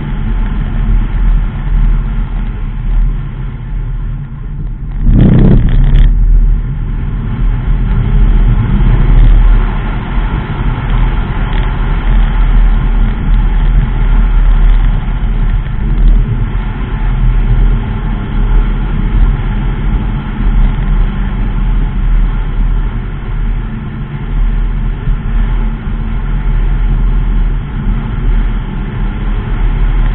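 Mazda 3 2.0 driving along a narrow lane, with a steady low engine and tyre rumble heard from inside the car. A brief loud burst of noise comes about five seconds in.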